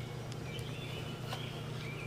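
Outdoor ambience: a few short, faint bird chirps over a steady low hum.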